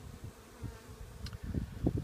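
Honeybees buzzing at a hive entrance, a faint steady hum, with irregular low rumbles on the microphone.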